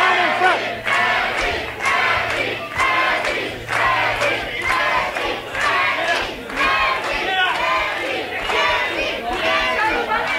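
Wrestling crowd chanting in unison, many voices shouting together in a steady rhythm of about one shout a second, cheering on one of the wrestlers.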